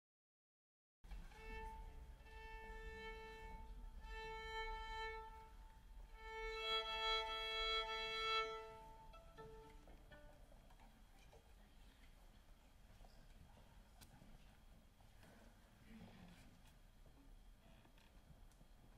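A violin being tuned: the open A string is bowed in three long, steady strokes, and in the last the open E sounds with it as a double-stopped fifth. Then a quiet hush.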